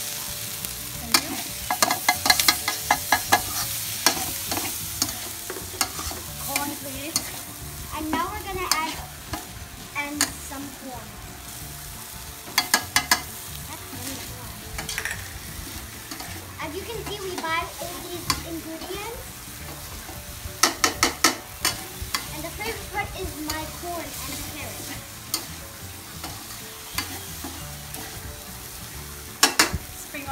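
Fried rice stir-frying in a steel wok: a steady sizzle with a metal spatula scraping and tossing the rice. Several bursts of quick metallic clacks come as the spatula strikes the pan, about a second in, midway and near the end.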